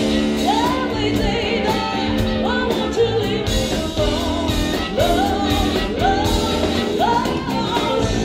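Live blues-rock band playing, with electric guitars, bass and drums under a lead line of notes that bend up and are held, played on harmonica.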